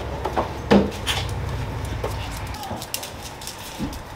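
Dogs shuffling about on a tiled floor as they are petted: scattered light clicks and taps over a low steady rumble that fades out a little over halfway through.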